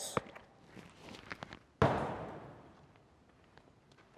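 A few light steps and small clicks on artificial turf, then one sharp smack of a baseball about two seconds in that echoes around a large indoor hall and fades over about a second.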